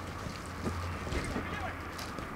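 Outdoor football match sound: faint shouts and calls from players on the pitch, with wind rumbling on the microphone.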